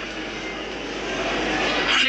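Steady rushing cabin noise of a moving vehicle, swelling slightly near the end.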